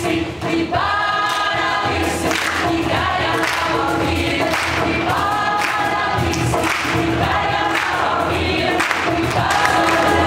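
Mixed choir of women's and men's voices singing a traditional folk song in held, sustained notes, with a brief break in the singing just after the start.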